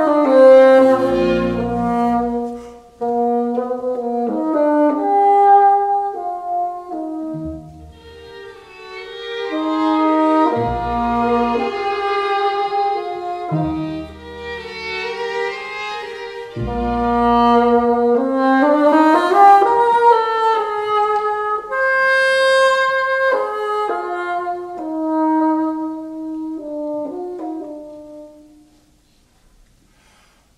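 Solo bassoon with a string quintet (two violins, viola, cello, double bass) playing a lyrical classical melody, the strings supplying recurring low bass notes beneath. Near the end the phrase settles on a held note that fades away into a brief pause.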